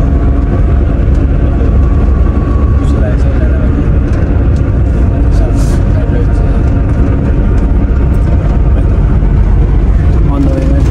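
Car in motion heard from inside the cabin: a loud, steady low rumble of engine and road noise.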